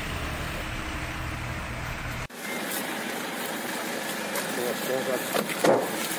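Steady low rumble of road vehicle noise that cuts off abruptly a little over two seconds in. It is followed by several people talking in the background.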